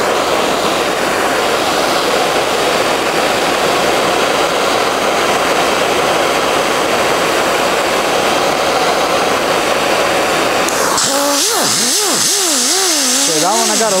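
Handheld gas torch hissing steadily as its flame heats sheet steel. About eleven seconds in, a pneumatic die grinder with a brass wire wheel starts up, its whine wavering in pitch as it is worked against the hot steel to brass-coat it.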